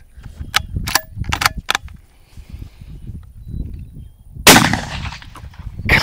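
A single unsuppressed rifle shot about four and a half seconds in, fired with the suppressor taken off, very loud with a short ringing tail. A few light clicks come before it.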